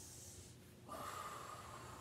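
Faint breathing through the nose, with a long, steady breath beginning about a second in.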